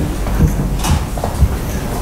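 Handheld wireless microphones being handled, giving a few knocks and thumps over a steady low hum.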